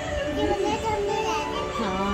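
A toddler's voice babbling and vocalising without clear words, over steady background music.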